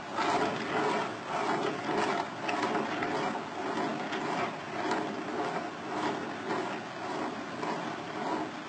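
Balls rolling back and forth on curved demonstration tracks. The rolling sound swells and fades over and over, roughly twice a second, with faint clicks.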